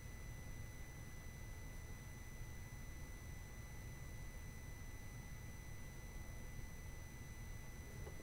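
Faint steady room tone from the recording setup: a low hum and an even hiss, with thin, steady high-pitched electrical whine tones and no other events.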